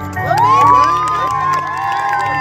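An audience cheering and shouting: many voices whooping at once, rising and falling in pitch, breaking out a moment in.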